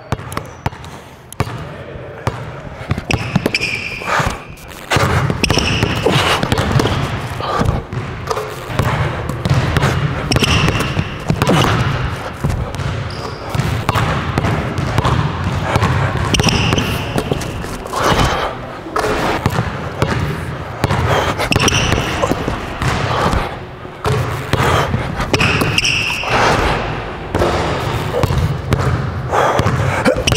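Basketball dribbled hard on a hardwood gym floor, a run of sharp bounces, with short high sneaker squeaks every few seconds, in an echoing hall.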